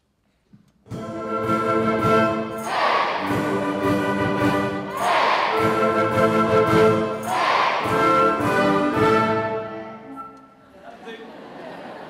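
School wind band of brass, woodwind and drums playing a lively tune that starts about a second in and stops about ten seconds in. Three times, at the rhythm cue, an audience shouts "hey" together over the band. A quieter burst of crowd noise follows as the music stops.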